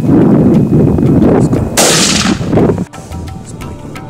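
A single rifle shot about two seconds in: a sudden, very loud crack with a short tail, heard over heavy wind rumble on the microphone. Music cuts in near the end.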